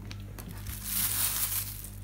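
Thin plastic bag crinkling and rustling as it is handled and a smoked pork rib is pulled out, loudest about a second in, over a steady low hum.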